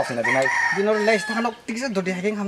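Rooster crowing: one held call about a second long, falling slightly in pitch, over a man's voice.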